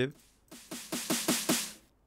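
Electronic snare sample played from a Reason Kong drum pad, about eight quick hits that get louder from soft to hard. This shows how the pad responds across low to high velocity.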